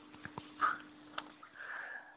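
A man breathing quietly: a short sniff, small mouth clicks, then a soft breath in before speaking. A faint steady hum sits underneath.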